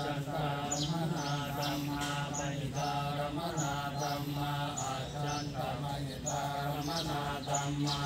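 Theravada Buddhist monks chanting Pali verses in unison: a steady, low, continuous drone of male voices moving syllable by syllable on one pitch.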